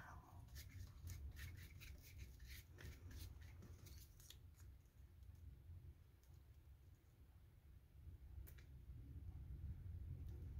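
Faint scratchy strokes of a flat paintbrush rubbing over a paper cutout on a collage, busiest in the first few seconds, with one more stroke near the end, over a low steady hum.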